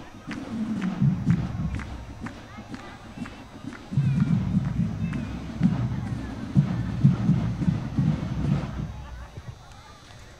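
A marching band heard muffled from the end of the field, with low pulsing beats about twice a second and light regular drum ticks, over crowd chatter in the stands.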